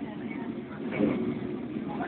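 Lisbon electric tram running along the street, a steady rumble heard from inside the car, with faint voices.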